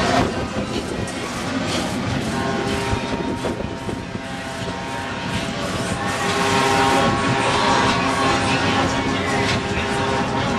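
Fairground midway din heard from high above: a steady rush of mixed crowd voices and machinery, with held musical tones that grow louder about two-thirds of the way through.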